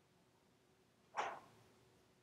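Near silence, broken about a second in by one short breathy noise from a person, such as a sniff or an exhale.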